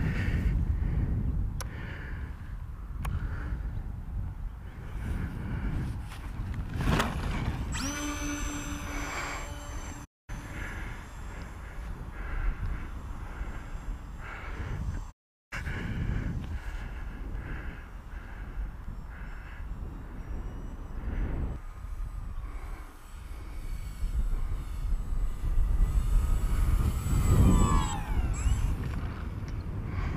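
Wind buffeting the microphone, with the whine of the Bush Mule RC plane's electric motor heard at times. Near the end the plane passes by and the motor's pitch falls.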